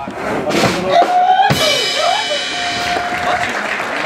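A Moravian folk brass band with a drum kit plays a short burst: a drum and cymbal hit, then a held brass chord from about a second and a half in.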